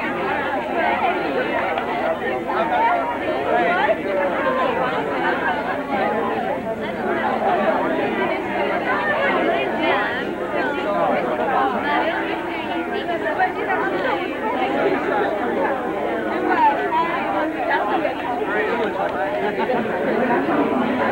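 Many people talking at once: steady, overlapping crowd chatter with no single voice standing out.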